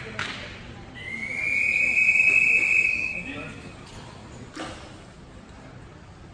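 A referee's long whistle blast at a swimming start: one steady high tone held for about two seconds beginning about a second in, the signal for swimmers to step onto the starting blocks. A short knock sounds near the start and another a little after the whistle ends.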